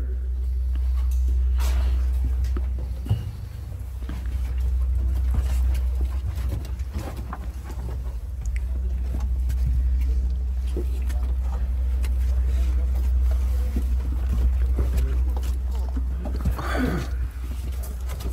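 A steady low rumble, with faint scattered knocks and a brief voice-like sound near the end.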